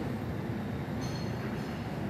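Steady low background rumble of the room, like ventilation hum, with faint high ringing tones for about half a second about a second in.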